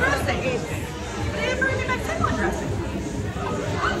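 Indistinct chatter of several people talking in a busy restaurant dining room, with no single clear voice.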